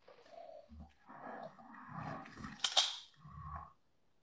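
A person's wordless vocal sounds, uneven and breathy, with a couple of dull thumps and a sharp click about two-thirds of the way in.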